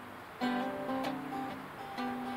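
Acoustic guitar playing between sung lines: a chord struck about half a second in rings on, with more notes picked around a second in, slowly fading.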